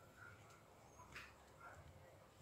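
Near silence: room tone, with one faint soft rustle a little over a second in.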